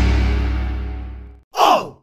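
Edited-in title-card sound effects: a loud, deep booming hit fading out over about a second and a half, then a brief sound sliding down in pitch just before the end.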